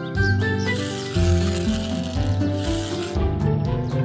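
Cartoon background music with a gritty rubbing sound effect from about a second in until near the end.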